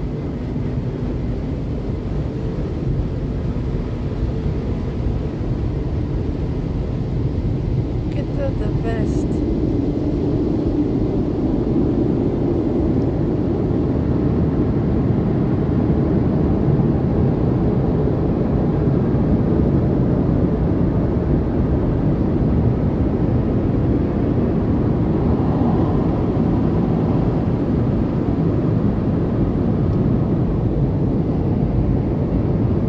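Steady low rumble and rush of noise heard from inside a car's cabin, growing a little louder about ten seconds in, with a brief rattle around eight seconds in.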